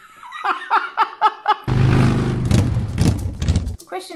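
A man and a woman laughing for about a second and a half, followed by a loud burst of sound with a deep hum and hiss that lasts about two seconds and cuts off abruptly.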